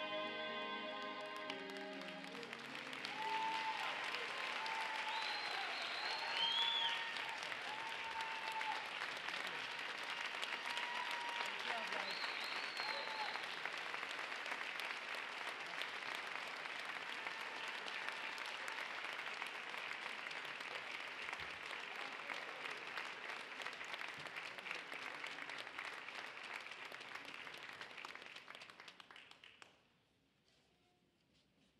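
A gospel choir's final sung chord ends about a second in, and the audience breaks into long, sustained applause with a few voices calling out. The clapping fades away near the end.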